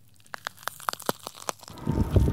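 A transition sound effect: an irregular run of about a dozen short, sharp clicks and crackles over roughly a second. Music comes back in near the end.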